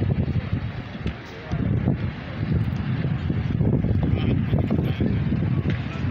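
Wind buffeting the microphone, an uneven low rumble that eases briefly about a second in, over background traffic and faint voices.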